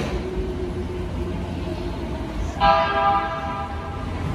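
JR E257 series limited express train pulling out of the platform sounds its horn: one steady call of a little over a second, starting about two and a half seconds in, over the low rumble of the moving train.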